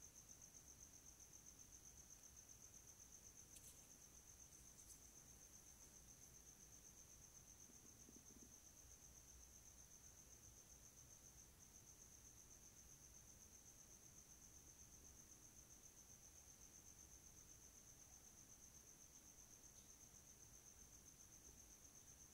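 Near silence in a pause between spoken test sections, with only a faint, steady high-pitched tone.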